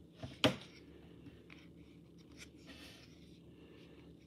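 Trading cards from a 2021 Prestige football pack handled in a stack: a sharp card snap about half a second in, then faint sliding and rustling as the cards are shuffled through.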